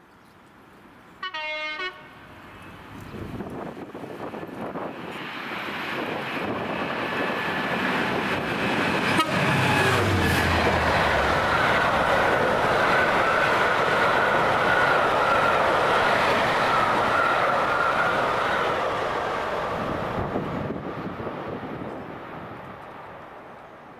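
Class 66 diesel locomotive, a two-stroke V12, gives a short horn blast about a second in, then comes up at speed and passes close by, its engine note dropping in pitch as it goes past. A long rumble of coaches running through follows, with a ringing wheel note, before it fades near the end.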